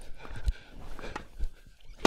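Tennis rally on an outdoor hard court: a few sharp ball pops from racket strikes and bounces, spread through the two seconds, with a player's running footsteps.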